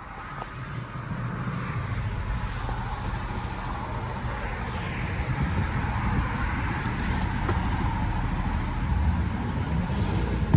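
Engine of a 2012 Ford F-250 Super Duty running steadily, heard from inside the cab. It gets a little louder in the first couple of seconds, then holds even.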